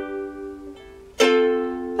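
Ukulele strummed: a chord rings out and fades, then a fresh strum a little over a second in rings on.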